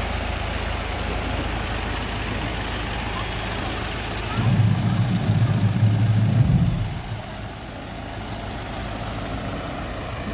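Diesel school bus engines idling as a low steady hum under a steady background noise, with a louder low rumble from about halfway through that stops sharply about two seconds later.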